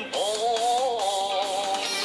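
Music: a song in which a singer holds one long, slightly wavering note over a soft accompaniment.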